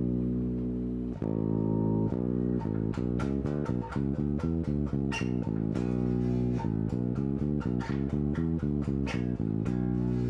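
Solo five-string electric bass playing single notes of a B minor scale pattern, pairing fretted B with the open A string: two long held notes, then a quicker run of notes, ending on a long sustained note.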